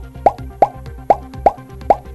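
Cartoon pop sound effect repeated five times, a short upward-gliding 'bloop' every third to half a second, over a faint background music bed.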